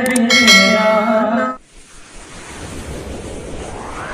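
A man singing a devotional naat, holding a long note, cut off abruptly about one and a half seconds in. Then a whoosh sound effect swells and rises in pitch.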